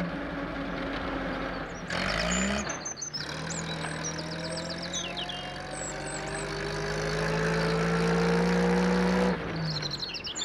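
A small van's engine running and speeding up, its pitch climbing slowly over several seconds before it falls away near the end. A short rougher burst comes about two seconds in, and birds chirp briefly early on.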